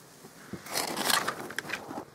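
Rustling handling noise lasting about a second, starting about half a second in, with small scuffs and clicks, as the camera is moved around.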